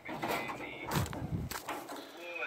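Rustling handling noise with a few sharp knocks about a second in and again halfway through.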